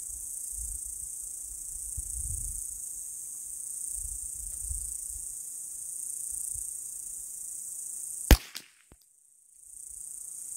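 A single shot from a bolt-action .22 rimfire rifle about eight seconds in, sharp and loud, over a steady high drone of insects. The sound cuts out for about a second right after the shot.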